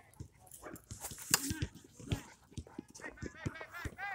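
A small dog making short, high-pitched vocal sounds, a quick run of them in the last second, with people's voices in the background.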